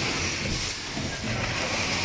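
Fully electric six-cavity PET stretch blow moulding machine running in automatic production, with a steady mechanical clatter. A hiss of compressed air comes about a second and a half in and recurs roughly every two seconds, in step with the machine's two-second blowing cycle.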